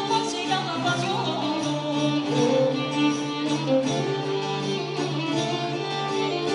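Traditional Greek folk-dance music played live: a voice singing over bowed strings, with a sustained low note under the tune.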